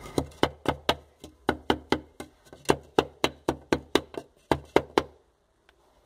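A rapid run of sharp knocks, about four or five a second, on brickwork that stops a little over five seconds in. It is the tapping used to seat and level freshly laid bricks against a straight wooden strip.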